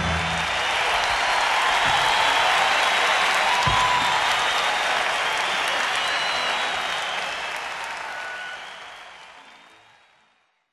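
Audience applauding. The applause fades out over the last three seconds.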